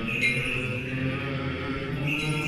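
Orthodox liturgical chant sung in long held notes that step slowly from pitch to pitch.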